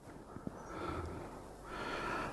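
Faint breathing picked up close by a headset microphone, with a small click about half a second in and the breath sound rising again near the end.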